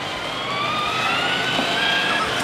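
Battery-powered ride-on toy car: a high whine rising slowly and steadily in pitch as the car moves along.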